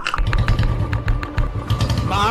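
Motorcycle engine idling, a pulsing low rumble with a rapid, even ticking over it, about seven ticks a second.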